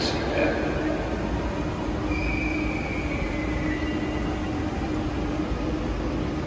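Deutsche Bahn ICE electric train at a station platform, giving a steady low hum. A thin, high squeal comes in about two seconds in, sinks a little in pitch and fades out a couple of seconds later.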